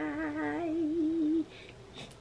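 A woman's voice holding one long hummed note that wavers near the end and stops about a second and a half in.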